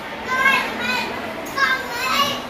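A small child's high-pitched voice, a few short calls about half a second in and again near the end, over the steady murmur of a busy shop.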